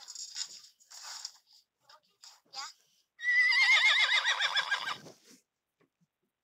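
Horse whinny sound effect ("Horse 2") played from a video-editing app's sound library: one long, wavering neigh that falls in pitch, starting about three seconds in after a few short, quieter sounds.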